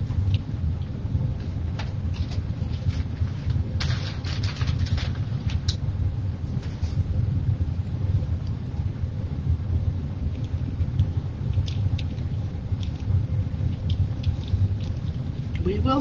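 Steady low background rumble, with scattered faint rustles and light taps from craft material being handled.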